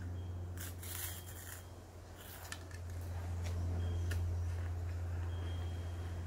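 Chewing and crunching dry Weet-Bix biscuit, a few short crisp crunches over the first half and another around four seconds in, over a steady low hum that swells a little in the middle.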